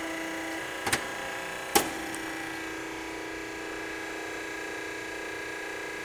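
20-ton Wabash hydraulic press's pump motor running with a steady hum while the two-hand palm controls are worked. Two sharp clicks come about one and two seconds in.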